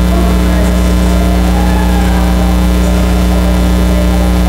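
Loud steady electrical mains hum with no change in pitch or level, with faint voices underneath.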